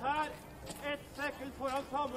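A voice speaking, quieter than the commentary around it.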